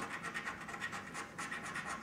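A lottery scratch card being scratched off by hand, a run of quick, short, repeated scraping strokes.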